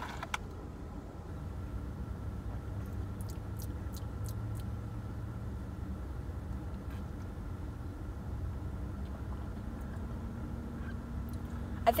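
Steady low rumble of a car running while parked, heard inside the cabin, with a few faint clicks and soft sips of an iced drink through a straw.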